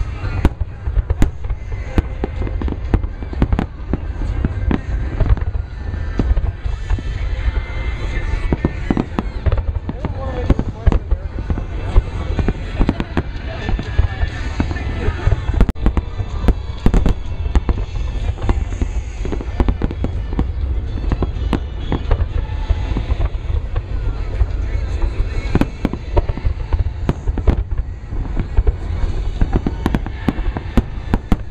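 A dense, continuous barrage of aerial firework shells bursting, several sharp booms and cracks a second over a constant low rumble, with crowd voices underneath.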